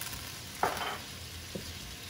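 Shrimp frying in olive oil and freshly added butter in a skillet, a steady sizzle, with a short louder noise a little over half a second in.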